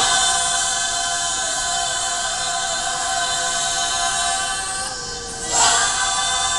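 Women's choir singing unaccompanied in the Bulgarian folk style: several voices hold long notes together in close harmony. A louder new chord comes in at the start and again about five and a half seconds in.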